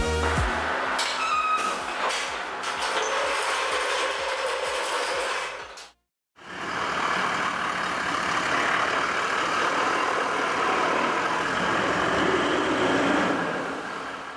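Vehicle running and moving off, heard as a steady rush without a clear engine note. It breaks for a moment about six seconds in and fades out near the end. The tail of a dance-music track ends in the first half-second.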